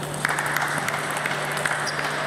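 Applause begins suddenly a moment in and carries on, over a steady low hum.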